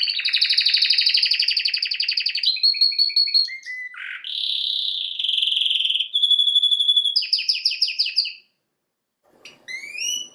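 Domestic canary singing: a long song of fast trills and rolling phrases that change from one to the next. It stops abruptly about eight and a half seconds in and, after a short silence, starts again with quick rising chirps.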